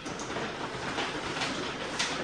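Window blinds being raised: a steady rustling rattle with a few clicks.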